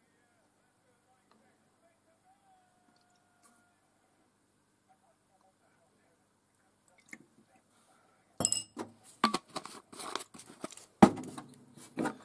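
Near silence for about seven seconds, then a run of sharp clinks and knocks, two of them louder, from a metal teaspoon, a glass and small plastic bottles being handled and set down on a metal worktop.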